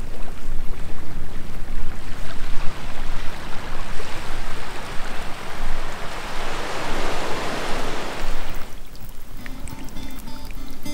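Small waves washing onto a sandy beach, with wind rumbling on the microphone; the wash builds to its loudest late on and then drops away suddenly.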